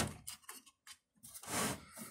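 A sharp click at the start as a coin-cell CMOS battery snaps into its holder on the motherboard, then faint ticks and a brief rustling scrape about one and a half seconds in, from a hand handling parts and cables inside the computer case.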